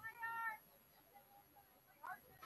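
A single high-pitched shouted call lasting about half a second, near the start, followed by faint voices.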